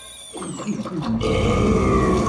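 An animated panda character's voice on a show soundtrack letting out a drawn-out, strained grunt. It starts about half a second in and builds into a held cry, as the character reacts to the burn of hot sauce just swallowed.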